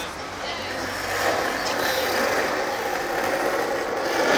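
Street noise: a steady rush of passing traffic, growing about a second in, with people talking in the background.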